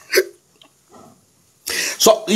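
A man's short vocal sound, then a pause, then a sharp, hiccup-like intake of breath near the end as he gathers himself to speak again.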